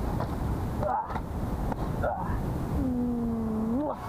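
A man's wordless voice: two short vocal sounds about one and two seconds in, then a held hum near the end that rises in pitch as it ends, over a steady low rumble.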